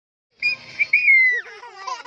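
A baby gives a loud, high-pitched squeal about half a second in, which glides down in pitch and breaks into laughter near the end.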